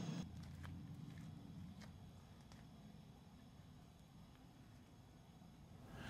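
Near silence: the faint low rumble of a propane fire bowl's flames over lava rocks, fading slightly, with a few faint clicks in the first half.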